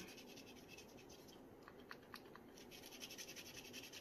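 Faint scratching of a DecoColor gold paint marker nib drawn along the rough rock edge of a resin coaster, with a few light ticks about two seconds in.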